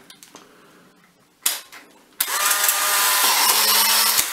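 Polaroid 1000 instant camera firing: a sharp shutter click about a second and a half in, then the camera's motor whirring steadily for about two seconds as it drives the exposed print out of the front slot.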